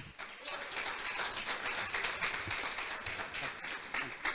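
Audience applauding: a steady wash of many hands clapping that begins right as the last words end.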